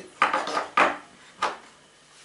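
A few short clinks and clatters of small hard objects being handled, in three quick bursts within the first second and a half.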